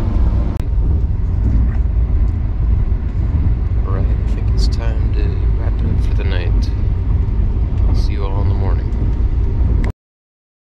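Steady low rumble of a moving sleeper train heard inside the carriage, with occasional short knocks and rattles and indistinct voices. It cuts off suddenly at the very end.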